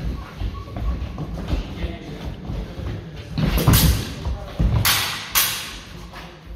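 Fencers' footwork thudding on a wooden floor during a historical sabre bout, with three or four sharp blade clashes and hits coming quickly in the second half.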